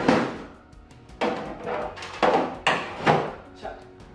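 A series of five sharp thumps and knocks: one at the start, one about a second in, then three in quick succession near the end.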